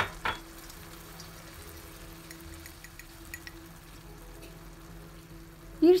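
Faint, steady sizzling of a pan of beet greens simmering with freshly added hot water, over a low steady hum. A couple of light knocks come right at the start.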